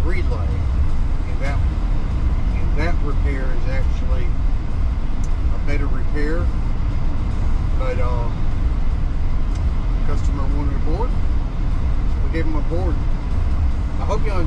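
Steady low rumble of road and engine noise inside a moving van's cabin, with a man talking over it.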